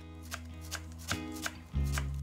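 Chef's knife slicing through an onion onto a wooden cutting board, a short knock roughly every 0.4 s, five or so strokes. Background acoustic-guitar music plays underneath and gets louder near the end.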